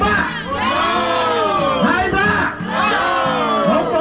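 A small group of people cheering and shouting together, several voices at once in long drawn-out calls that come in about three rounds.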